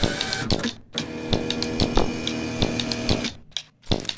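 Soundtrack of sustained pitched tones under a fast, clattering run of clicks. It breaks off briefly just before a second in, resumes, and stops abruptly a little after three seconds.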